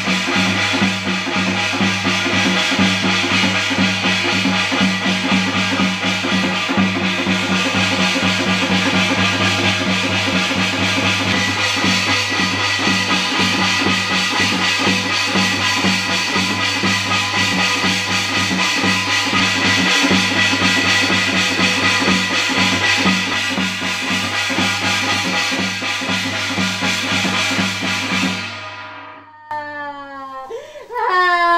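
Korean shamanic ritual percussion: a janggu hourglass drum beaten fast with a jing gong, playing loud and steady, cutting off suddenly near the end.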